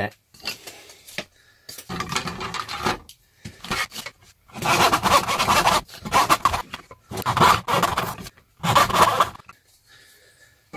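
Hand panel saw cutting through a wooden strip held on a bench hook: a run of rasping back-and-forth strokes, roughly one a second, with short pauses between them.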